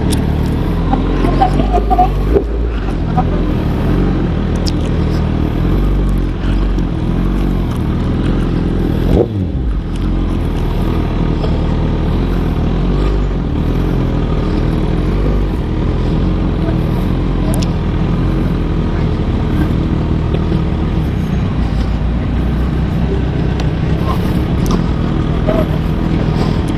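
Sport motorcycle's engine running steadily at low speed under the rider, with a brief rise in revs about nine seconds in.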